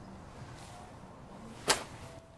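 A single short, sharp crack about three-quarters of the way in, over a faint steady hiss.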